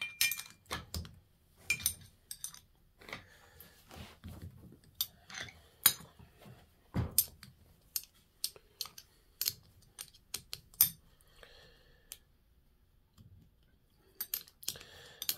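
Metal turbocharger parts clicking and clinking as they are handled and set down on a workbench: a run of sharp separate clicks with a heavier knock about seven seconds in, dying away near the end.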